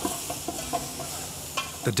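Chicken pieces sizzling in a steel stockpot on the stove, a steady hiss, with a few faint kitchen knocks.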